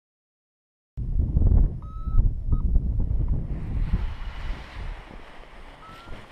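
Wind buffeting the camera microphone, cutting in suddenly about a second in as a loud, gusty low rumble that eases toward the end, when a thinner hiss takes over. A couple of short high beeps sound around two seconds in.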